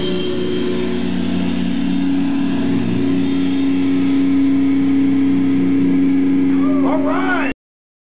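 Metal band's distorted electric guitar and bass holding a loud, droning chord as the song rings out, with a few rising and falling pitch sweeps near the end. The sound cuts off suddenly about seven and a half seconds in.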